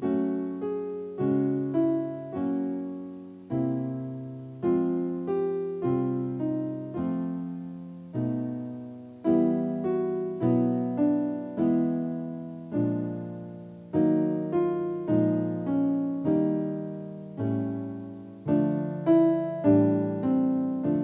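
Piano playing the accompaniment to a vocal warm-up exercise: a short five-note turn around the keynote with chords, repeated in ever lower keys as the exercise descends. The notes are struck one after another, each ringing and fading, with no voice singing along.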